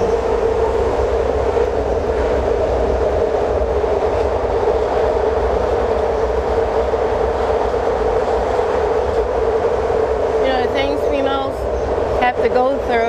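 A train passing: a loud, steady rumble with a constant hum that holds without a break. A voice comes in over it near the end.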